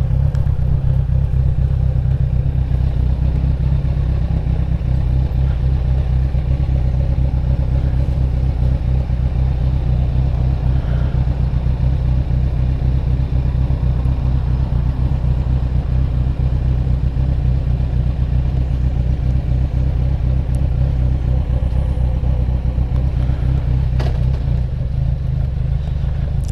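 Motorcycle engine idling and running at walking pace, a steady low beat with no revving. A single short click sounds near the end.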